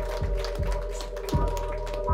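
Live electronic music played on synthesizers: a steady held drone with low bass pulses about once a second and rapid, sharp clicking over the top.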